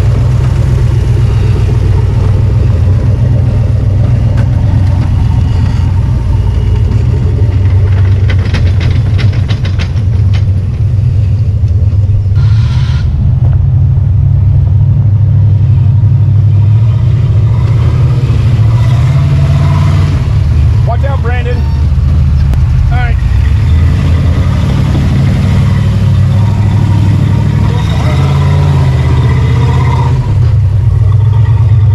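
Rock buggy's engine running loud under load as it crawls up a steep dirt and rock climb, its pitch rising and falling as the throttle is worked.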